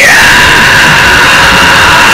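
Distorted electric guitar holding one loud, high note that glides slowly down in pitch, in heavy metal music.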